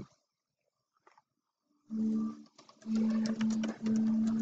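Computer keyboard keys clicking in quick succession as a short comment is typed, starting about two seconds in. Under the clicks is a low, steady tone that breaks off and resumes several times.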